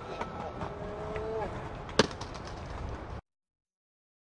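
Outdoor plaza ambience with a brief pitched call around the first second and a single sharp knock about two seconds in, then the sound cuts out abruptly a little after three seconds.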